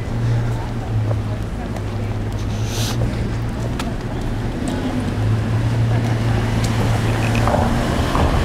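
A steady low mechanical hum that breaks off for a moment about halfway through, over a general outdoor noise of traffic and movement.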